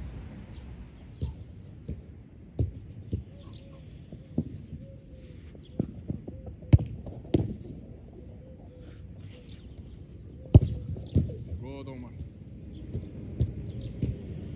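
A football being kicked and saved during goalkeeper diving drills: a string of sharp thuds from the ball being struck, hitting gloves and the keeper landing on the turf, the two loudest about seven and ten and a half seconds in.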